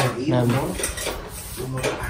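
Kitchenware clinking and clattering: a few sharp metallic clicks in the middle, with a man's voice talking at the start and again near the end.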